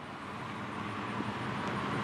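Road traffic: cars driving past, a steady tyre and engine noise that grows gradually louder.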